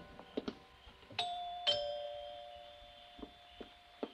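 Two-note door chime sound effect: a higher ding about a second in, then a lower dong half a second later, both ringing on and slowly fading. A few faint taps are heard around them.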